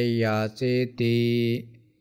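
A man chanting Pali scripture in a steady recitation tone, holding each syllable on nearly one pitch; the last syllable trails off near the end, leaving a brief pause.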